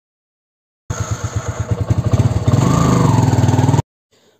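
Small scooter engine riding along, starting abruptly about a second in with a rapid low putter, then getting louder and rising in pitch as it accelerates, before cutting off suddenly just before the end.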